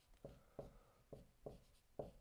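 Dry-erase marker writing on a whiteboard: about five short, faint strokes.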